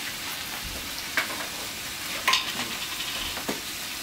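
Food sizzling steadily in a frying pan on the stove, with a few sharp clicks. The loudest click comes a little past halfway.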